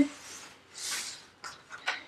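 Cardboard shipping box being opened by hand: a soft rustle of the cardboard flaps and packing around the middle, then two light taps in the second half.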